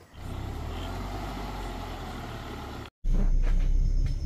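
Steady vehicle running noise. After a brief dropout about three seconds in, a louder low rumble follows: a Land Rover Defender driving on a dirt track, heard from inside the cabin.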